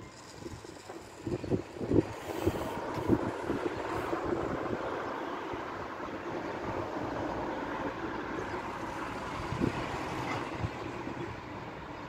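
Steady rushing noise of passing vehicles or traffic, building up over the first couple of seconds and then holding. A few short thumps come in the first three seconds, and another near the end.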